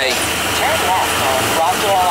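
Steady road and engine noise heard from inside the cabin of a moving vehicle on a paved road.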